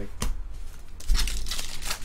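A trading-card pack wrapper torn open, with a crackling rip about a second in, after a short click of cards being handled.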